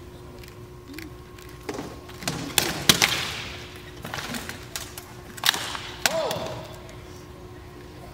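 Rattan swords striking armor and shields in armored combat: a few sharp blows about two seconds in, a flurry that is loudest about three seconds in, and two more hard blows near the end.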